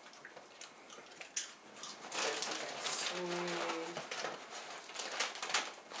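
Soft rustling and scuffling as two Jack Russell terriers jump and paw at a person on a leather couch, with a short hummed voice note about three seconds in.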